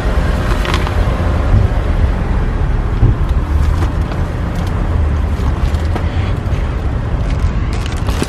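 Low rumble of a car driving, heard from inside the car, with a couple of faint knocks or rustles about a second and three seconds in.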